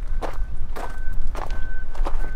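Footsteps on loose gravel: about three steps, roughly half a second apart.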